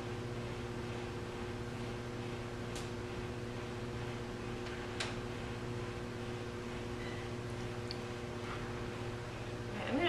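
Electric potter's wheel motor running with a steady hum, with a faint tick about five seconds in.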